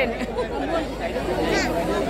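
Many people talking at once: a steady babble of overlapping conversation from a crowded party room.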